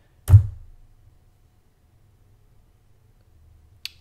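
One loud, dull thunk about a third of a second in, a click on the Surface Pro X Type Cover's trackpad to save the file, and a faint tick just before the end.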